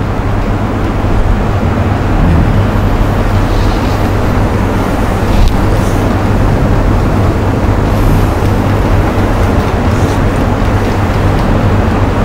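Steady rumbling background noise with a low hum running under it, and no speech.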